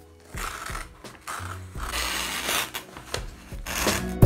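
Scissors cutting through a sheet of book-cover paper, with the paper rustling and crinkling in several short spells as it is handled.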